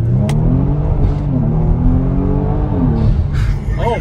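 Kia Stinger GT's JB4-tuned twin-turbo 3.3-litre V6 at full throttle in second gear, heard inside the cabin. The engine note climbs steadily from low revs for about three seconds, then falls away near the end.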